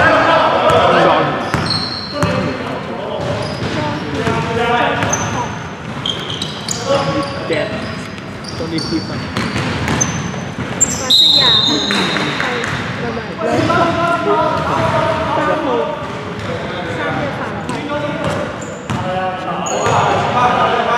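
Basketball game on a wooden gym court: the ball bouncing on the floor, sneakers giving short high squeaks, and voices in the background, all echoing in a large hall.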